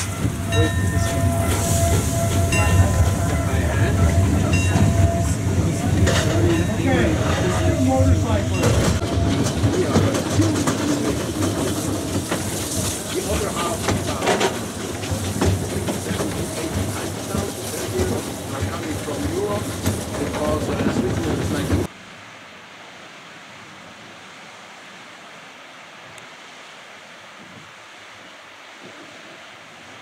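Steam cog railway train running, heard from a coach window: a steady rumble and rattle of the wheels on the track. About two-thirds of the way in the sound cuts off suddenly to a faint outdoor hush.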